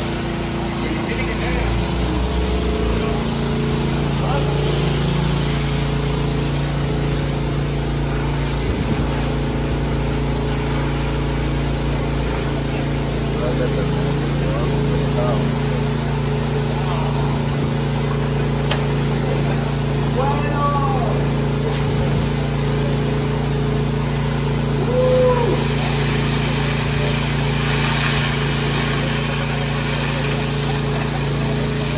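A fire engine's pump engine runs steadily, feeding a fire hose whose water jet hisses against a wet concrete floor. The engine note shifts about three seconds in, then holds steady.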